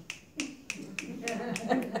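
Fingers snapping in a quick steady run, about three or four snaps a second.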